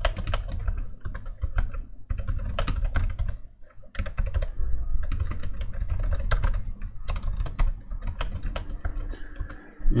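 Typing on a computer keyboard: runs of quick keystroke clicks broken by short pauses.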